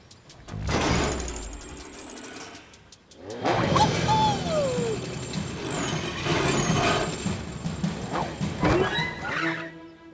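Cartoon soundtrack: background music with the sound effects of a ride down a zipline. A rushing noise comes about half a second in, then a busy stretch from about three and a half seconds with a long falling glide.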